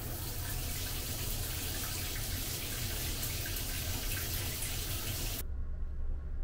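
Handheld shower head spraying water in a steady hiss, stopping abruptly about five and a half seconds in.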